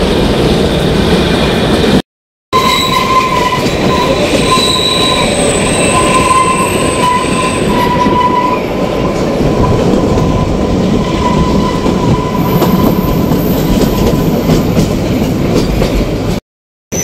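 Kalka–Shimla narrow-gauge toy train running along the track, heard from the carriage window as a loud, steady rumble and clatter. From about three seconds in to about twelve seconds, a thin, wavering wheel squeal sounds over it. The sound cuts out for about half a second near two seconds in.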